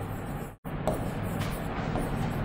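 Steady background noise with a low hum, which cuts out completely for an instant about half a second in. A few faint ticks of a pen stroking and tapping on a smart-board screen are heard over it.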